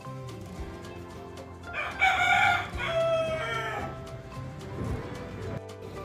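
A rooster crowing once, a single call of about a second and a half starting about two seconds in.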